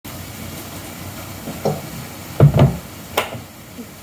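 Metal fork and tableware knocking on a ceramic plate at a wooden table: a few scattered knocks, the loudest a dull double thump about two and a half seconds in, then a sharp clink.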